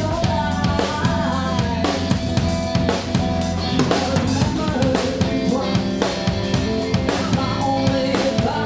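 Live rock band playing: a drum kit with bass drum and snare strokes to the fore, over electric bass and electric guitar.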